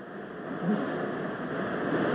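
Steady background noise filling a pause in speech, with a faint short sound about two-thirds of a second in.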